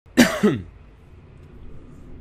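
A man clearing his throat: two quick rasps in the first half-second, then only a faint steady background hum.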